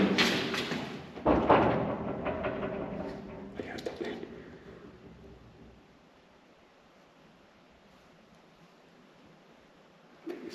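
Voices and a sudden thud about a second in, echoing in a bare block-walled corridor, with a few smaller knocks after; the sound then fades to quiet room tone for the second half.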